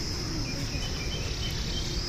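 Insects giving a steady, unbroken high-pitched buzz, with a few faint short chirps in the middle of it.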